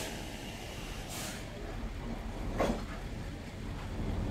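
Low, steady rumble of a vehicle engine in the background, with a short faint sound a little over two and a half seconds in.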